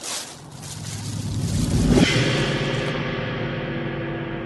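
Film score sound design: a brief swish, then a low swell that builds to a peak about two seconds in and settles into a sustained drone of several steady tones.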